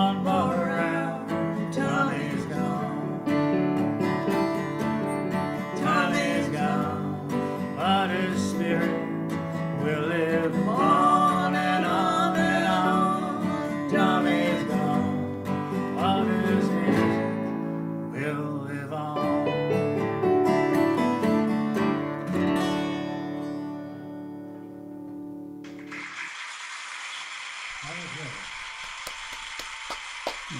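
Acoustic guitar played with singing over it: a song that winds down and ends about 26 seconds in. After it comes a steady hiss.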